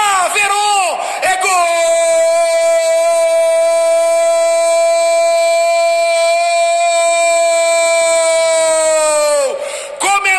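Football commentator's goal shout: a few quick excited cries, then one shout held on a single high pitch for about eight seconds, falling away at the end.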